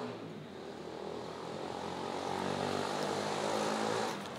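A steady engine drone with a low hum, growing gradually louder and then dropping off sharply at the end.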